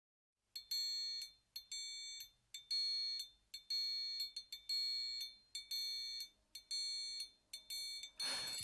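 A high, bell-like ringing tone sounding in short rings of about half a second, once a second, eight times, each ring opened and closed by a faint click.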